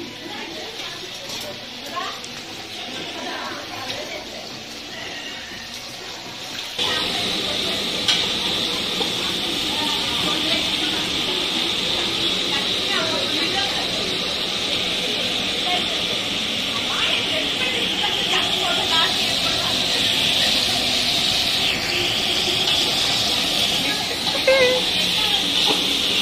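Stuffed brinjals frying in hot oil in a large aluminium pot: a steady sizzle that starts abruptly about seven seconds in, after a quieter stretch. People can be heard talking in the background.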